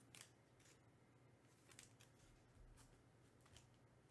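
Near silence with a few faint, soft clicks from baseball cards being handled on a tabletop, over a low steady room hum.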